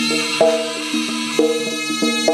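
Live East Javanese jaranan gamelan music: tuned gongs and metallophones ring together in a repeating pattern, with a stronger struck note about once a second.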